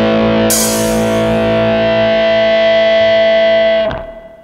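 Final chord of a Bisaya rock song: a distorted electric guitar chord held and ringing over the band, with a cymbal crash about half a second in. It is cut off abruptly just before the end.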